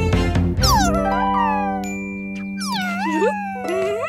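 A cartoon cat meowing twice, each drawn-out call sliding down and then up in pitch, over background music of sustained notes.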